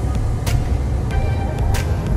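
Steady low road and drivetrain rumble inside the cabin of a moving Mercedes-AMG E53, with music from the car stereo beneath it. Two sharp clicks, one about half a second in and one near the end.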